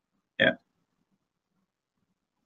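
A man says "yeah" once, short, about half a second in; the rest is silence.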